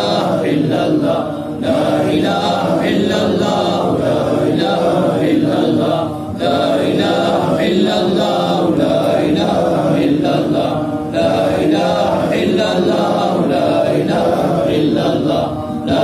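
Group of men chanting Arabic dhikr together in unison. Short breaks fall between phrases about every four to five seconds.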